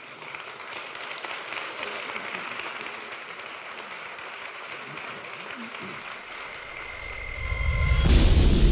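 Audience applauding at the end of a talk, a steady clatter of many hands clapping. Near the end, steady high tones and a rising low swell come in under the clapping.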